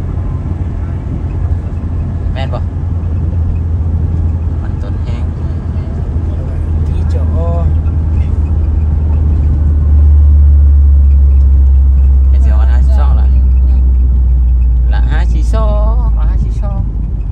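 Steady low road rumble heard inside a moving car, tyres on a concrete highway with the engine beneath. It grows louder about ten seconds in.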